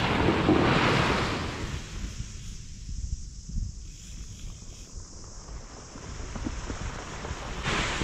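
Surf on the beach: a wave breaks and washes in, loudest in the first two seconds, then fades. Wind buffets the microphone with a low rumble throughout.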